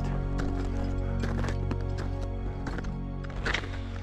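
Background music of sustained steady tones, with irregular sharp percussive ticks over it.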